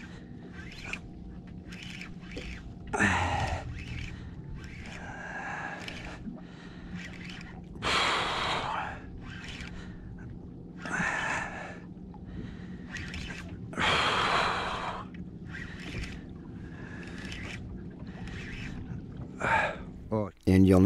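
A man breathing hard, with a heavy gasping breath every two to three seconds, the loudest about eight and fourteen seconds in: the exertion of cranking a heavy tautog up from deep water on a spinning reel. A steady low hum runs underneath.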